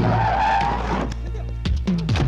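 A van's tyres screeching as it brakes hard for about a second, then a steady low drone, over background film music.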